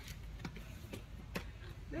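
Four light, sharp clicks about half a second apart, over a steady low background hum.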